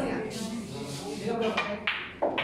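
Low chatter of voices in a billiard hall, with a single sharp click near the end.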